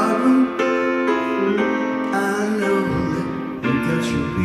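Live ballad music led by piano chords held and changed about once a second.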